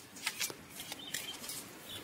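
Tarot cards being handled: soft papery rustling with a few light flicks and clicks.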